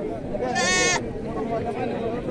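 A goat bleats once, a short, high, wavering call about half a second in, over the chatter of people around it.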